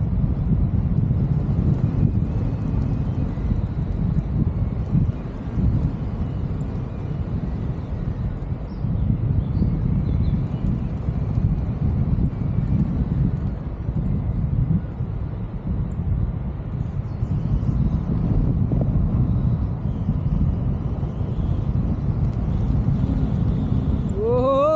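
Airflow buffeting the camera's microphone during tandem paraglider flight: a steady low rumble that swells and eases.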